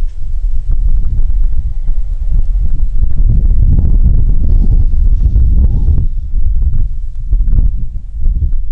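Wind buffeting an exposed microphone: a loud, gusting low rumble.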